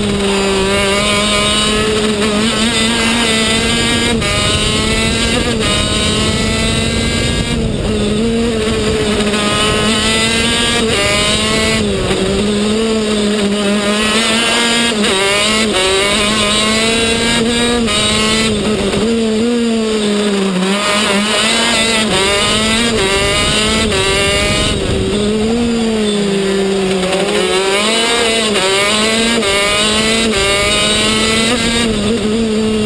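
TM K8 125 cc two-stroke engine of a KZ gearbox kart running hard on track. Its pitch climbs and falls repeatedly as it accelerates, shifts gear and slows for corners.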